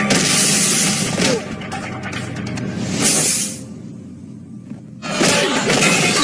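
Dubbed-in action-film soundtrack: background music with a crashing, shattering impact effect at the start. It swells about three seconds in, drops quieter, then comes back with another sudden loud crash about five seconds in.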